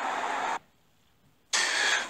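Steady background hiss of room noise that cuts off to complete silence about half a second in and comes back about a second later.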